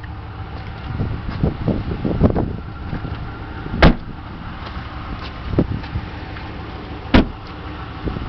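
Rear door of a 2015 Ram 1500 crew cab pickup shut with a sharp thump just before four seconds in, followed by a second thump about three seconds later, after a few lighter handling knocks.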